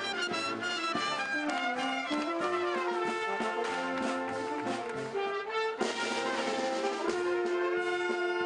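A marching street band of trumpets, saxophones and other brass playing a piece together, with a moving melody over sustained lower notes.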